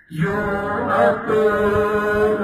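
A man's voice singing a devotional song in long, held notes. It comes in just after a brief pause.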